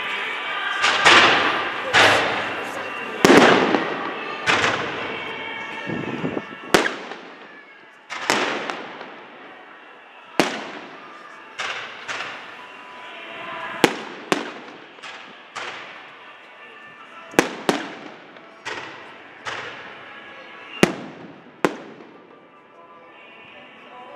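Fireworks display: aerial shells bursting, a quick run of loud bangs in the first few seconds, then single reports about every second, each trailing off in an echo.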